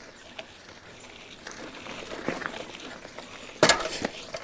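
A rental bicycle ridden over a rough dirt track, rattling quietly as it rolls, then a sudden loud clatter from the bike near the end. The jolt is a sign of the bike's poor condition: it keeps slipping.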